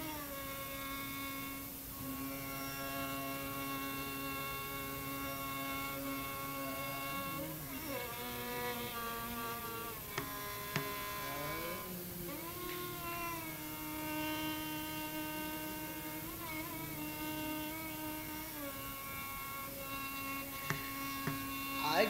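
Carnatic violin playing a slow, unmetered passage of long held notes joined by gliding ornaments, with no percussion.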